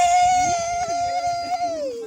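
A long, high-pitched vocal cry held on one note for about a second and a half, then falling in pitch near the end, with a lower voice moving underneath.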